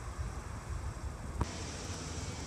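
Steady low rumble of wind on the microphone, with a single short click about one and a half seconds in.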